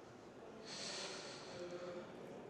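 A person's breath close to the microphone: a hiss that starts suddenly a little over half a second in and lasts more than a second.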